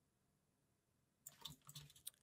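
Near silence, then a few faint, short clicks about a second and a quarter in.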